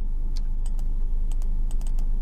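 Computer keyboard being typed on: light, irregularly spaced key clicks over a steady low hum.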